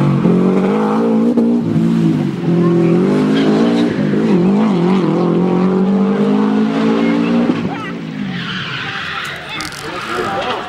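Subaru Impreza WRX STI rally car's turbocharged flat-four engine pulling hard away through several gear changes, its pitch climbing and dropping back with each shift. It fades about eight seconds in as the car draws away.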